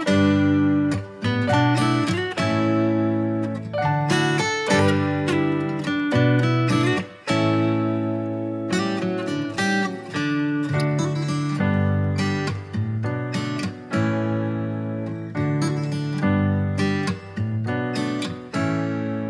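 Background music: acoustic guitar playing a run of plucked and strummed notes.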